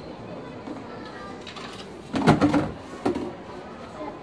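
Knocks and a clatter from handling an oven door and plastic food boxes: a louder clatter about two seconds in, then a sharp knock a moment later.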